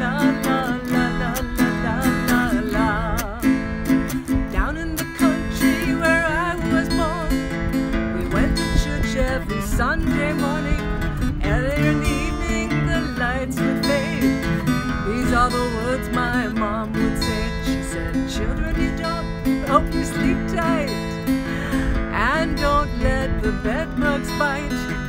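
Acoustic guitar strummed in a steady rhythm as the introduction to a song, with a wavering melody line over the chords.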